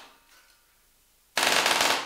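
Spider Shot multi-barrel pyrotechnic rope-snare gun firing a rapid string of shots like a machine gun, a burst of about half a second starting about a second and a half in. The tail of an earlier burst dies away at the start.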